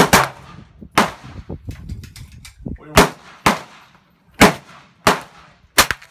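Gunshots at a firing range: about seven sharp shots at irregular intervals, each followed by a short echo.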